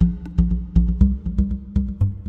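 Sampled ka'eke'eke (Hawaiian bamboo stamping pipes) from a Kontakt instrument, playing a fast rhythmic pattern of short struck notes. Louder, deep low notes come in right at the start.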